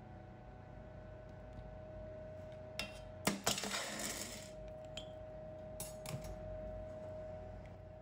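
Hot gold bar knocked out of an iron ingot mold and dropped into a stainless steel bowl of water to quench: a few light clinks, a sharp metallic clank, then about a second of splashing. More light clinks follow as the bar is handled in the bowl, over a faint steady hum.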